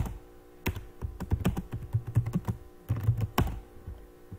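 Typing on a computer keyboard: an uneven run of keystroke clicks, with a denser flurry about three seconds in, over a faint steady low hum.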